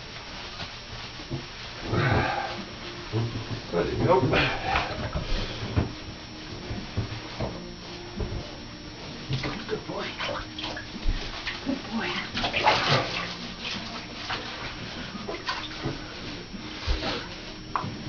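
Bathwater sloshing and splashing as two wet chow chow puppies are scrubbed by hand in a shallow tub. It comes in irregular bouts, loudest about two, four and thirteen seconds in.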